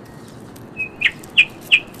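Small bird calling: a brief whistle, then three short chirps, each falling in pitch, about a third of a second apart in the second half.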